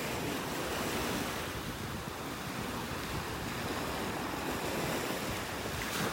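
Small Gulf of Mexico waves breaking and washing up a sandy beach, a steady hiss of surf, with wind buffeting the microphone.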